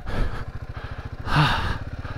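Royal Enfield Himalayan 450's single-cylinder engine running steadily, its firing pulses even throughout, with a short vocal sound from the rider about one and a half seconds in.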